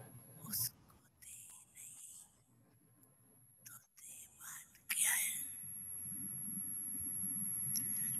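Soft, breathy, halting speech from an elderly woman close to a microphone, in short faint fragments with pauses between. A steady hiss comes up from about five seconds in.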